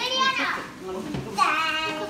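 Young children's voices: two high-pitched calls, one at the start and one about a second and a half in, over background chatter.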